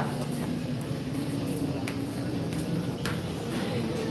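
Pool balls being racked, giving a couple of faint sharp clicks about two and three seconds in, over a steady low hum.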